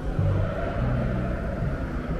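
A car engine's low, steady rumble, with outdoor crowd noise behind it.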